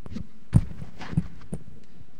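Low handling thumps with rustling on a microphone: three dull thuds, the first about half a second in the loudest, the last faint.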